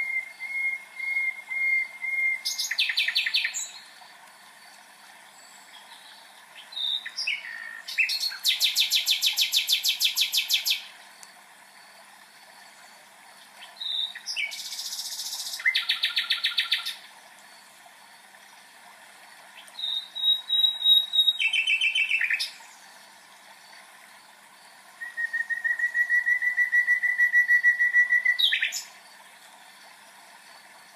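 A songbird singing in separate phrases of rapid trills and whistled notes, five phrases with pauses of a few seconds between them, over a steady faint hiss.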